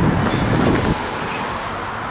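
Wind rushing over the microphone of a handheld camera during a run, giving way after about a second to a steadier outdoor hiss of road traffic.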